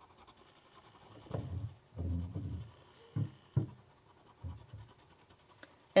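Creative Mark Cezanne wax-based colored pencil rubbing on paper in a few short, firm strokes: burnishing the layers of color together under heavy pressure. Faint.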